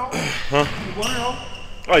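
A basketball bounces on a hardwood gym floor behind quiet, indistinct talk.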